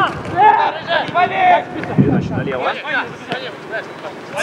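Footballers shouting and calling to each other across the pitch during play, with a short low thump about two seconds in.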